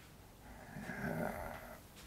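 Faint, low breathing from a man in a pause between sentences, swelling about half a second in and fading near the end.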